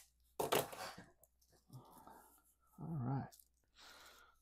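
A short rustling crunch of packaging and small parts being handled, loudest about half a second in, with softer handling noises after it. A brief wordless voice sound comes around three seconds in.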